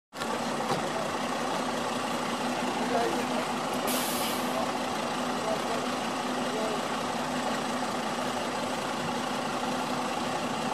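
Mercedes-Benz city bus's diesel engine idling steadily, with a short hiss of released air about four seconds in.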